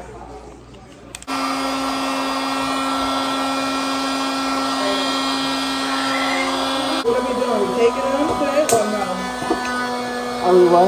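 Small electric air pump switched on about a second in, running steadily with a constant hum and whine as it inflates a pool float.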